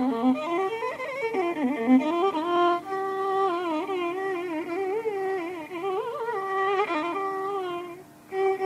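Carnatic violin playing a continuous melodic line in raga Mohanam, its notes held and bent in wavering slides (gamakas).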